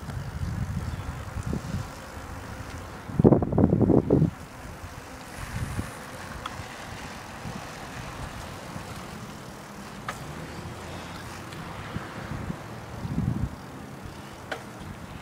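Wind buffeting the microphone over a steady low rumble of motion across pavement, with a loud gust about three seconds in and a few faint clicks later on.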